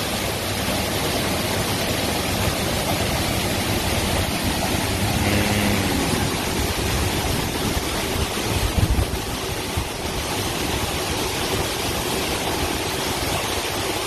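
Grain pouring steadily from an automatic rice weighing-and-bagging machine into a mesh bag, with the constant running noise of the processing machinery. A few low knocks come about nine seconds in.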